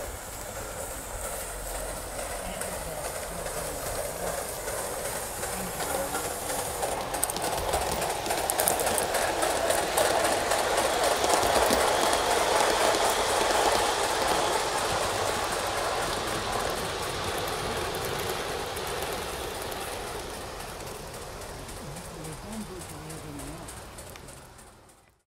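Gauge 1 live-steam model train, an Aster Schools 4-4-0 hauling coaches, running on garden track with its wheels clicking over the rail joints. It grows louder until about halfway, then fades as it moves away.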